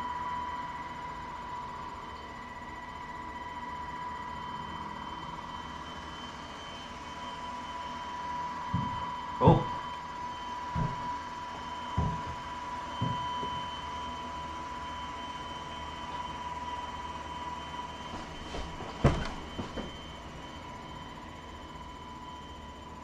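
Robot vacuum running just outside a closed bedroom door: a steady high whine, with scattered knocks and bumps, the loudest about nine and a half seconds in and another pair near the end.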